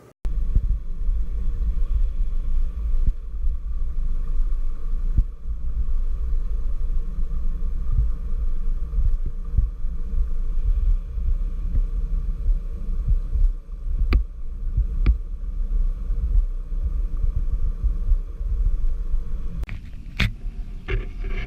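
Low, steady rumble of water heard through a submerged camera in a fish hatchery tank. Two faint clicks come about a second apart, two-thirds of the way through.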